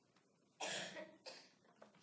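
A person coughing twice in quick succession, loud against the quiet room, with a weaker third sound near the end.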